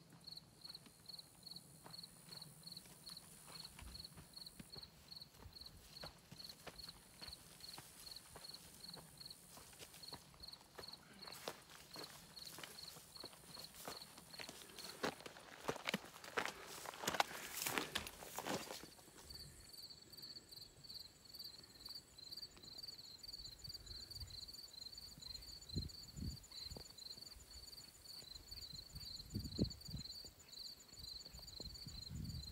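Footsteps of a hiker with trekking poles on a dry, grassy, rocky trail, growing louder as he comes close and passes, loudest around 16 to 18 seconds, then gone. Insects chirp in a steady pulsing rhythm throughout, and a few low thumps come near the end.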